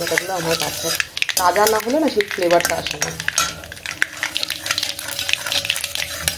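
A steel spatula stirring and scraping in a kadai, with repeated scrapes and clicks, as the spiced potato filling for masala dosa fries and sizzles.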